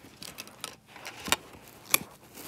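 Broken DVD disc and plastic case fragments clinking and cracking as they are smashed and moved about, with small ticks and two sharp cracks, one about two-thirds through and one at the very end.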